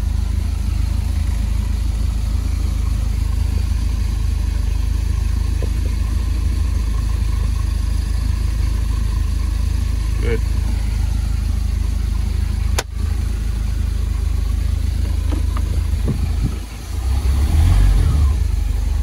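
A 180-horsepower MerCruiser boat engine idling steadily out of the water on a hose hookup, a constant low drone. A single sharp click about two-thirds of the way through.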